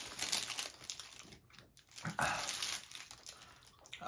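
Paper fast-food wrapper crinkling as a burrito is handled and pulled from it, with a second short rustle a couple of seconds in, along with the mouth sounds of chewing a bite.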